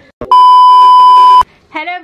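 A single loud, steady, high-pitched electronic beep lasting about a second, cutting off sharply, with a short click just before it: a beep tone edited into the soundtrack.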